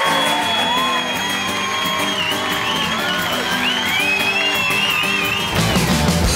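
Guitar chords strummed in a steady rhythm open a live rock song, with audience whoops and cheers over them. Bass and drums come in near the end.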